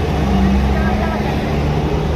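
Road traffic: a motor vehicle engine running with a steady low hum.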